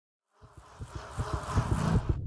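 A sound-effect swell for a logo intro: a rising whoosh over a low rumble of quick, uneven thuds, building from silence to loud over the last second and a half.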